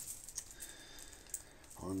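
A few faint, sharp clicks of metal coins being handled and tapping against each other, about three over two seconds.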